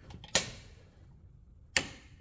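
Wall rocker light switch flipped, two sharp clicks about a second and a half apart.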